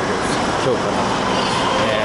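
Steady, loud background noise of a station concourse, heard through a handheld camera's microphone while walking, with a few faint voice sounds.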